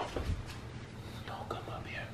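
Faint whispering voices, with a few light knocks and handling noise.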